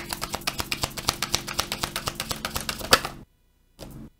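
A tarot deck being shuffled by hand: a quick, even run of card clicks, about ten a second, with a sharper snap just before it stops about three seconds in and a brief rustle near the end.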